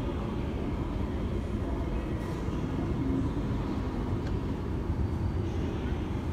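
Steady low background rumble, even throughout, with no distinct events.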